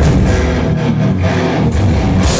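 Live heavy metal band playing loud, with distorted electric guitars and bass carrying a passage where the cymbals drop back.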